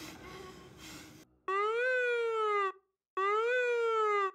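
Emergency vehicle siren giving two short wails, each rising then falling in pitch, with a brief gap between them. Before the first wail there is about a second of faint background noise that dies away.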